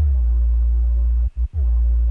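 Sub-bass line played from a sample of blowing across an empty bottle, pitched down: a deep held note that cuts out twice, briefly, a little past the middle, then carries on.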